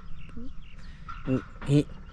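A man's voice in a few short, hesitant sounds during a pause in his talk, over a faint outdoor background.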